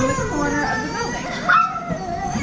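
Children's voices: wordless playful calls and squeals, with a brief louder cry about one and a half seconds in.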